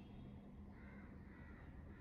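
Near silence: room tone, with a faint high-pitched sound in the second half.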